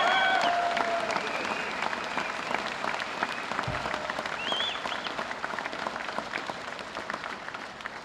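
Applause from a room full of people, fading gradually as it dies down.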